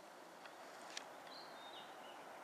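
Near silence: faint outdoor background hiss, with a small click about a second in and a faint, short, high chirp of a distant bird a little past halfway that steps down in pitch.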